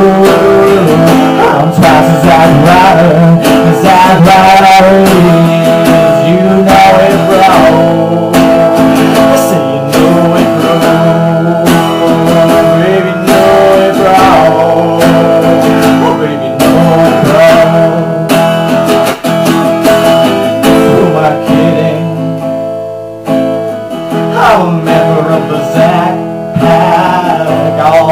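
Home-recorded music: a strummed acoustic guitar, with a man's voice singing along at times.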